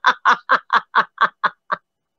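A woman laughing in a run of about eight short, evenly spaced bursts, about four a second, fading out near the end.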